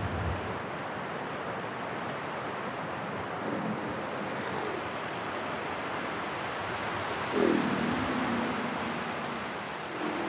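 Corsican red deer stag belling in the rut, marking his rutting ground: one deep, drawn-out call about seven seconds in, over a steady hiss.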